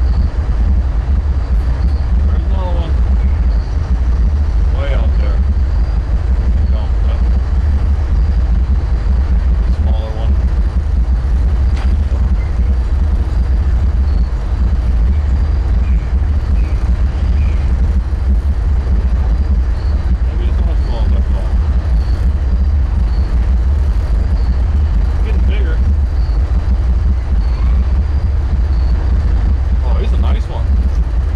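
Wind buffeting the microphone by a river: a loud, steady low rumble, with a few faint higher chirps and a single sharp click about twelve seconds in.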